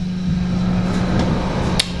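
A hidden bookshelf door being worked open by its handle: mechanism noise through most of the moment, then one sharp click near the end.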